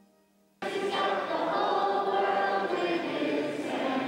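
Choral music: a choir singing, coming in suddenly about half a second in after a faint held note.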